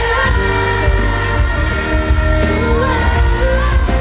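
Live pop music: a woman singing into a microphone over an amplified accompaniment with heavy, deep bass.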